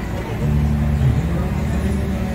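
A motor vehicle's engine running close by: a low, steady rumble that swells about half a second in.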